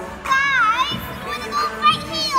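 A young girl's high-pitched voice, a long dipping-and-rising squeal about half a second in and a shorter one near the end, over background music.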